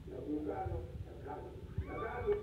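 A man speaking into a public-address microphone, heard through a television's speaker.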